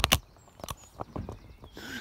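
Footsteps on a lane: a sharp knock at the start, then a few faint, irregular steps.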